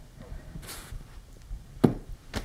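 Quiet handling sounds as stuffed toys are set down on paper targets over a cardboard backing: a brief soft rustle early on and a single sharp tap near the end.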